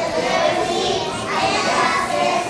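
A group of young children's voices sounding together in unison.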